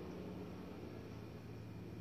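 Quiet room tone: a steady low hum under a faint even hiss.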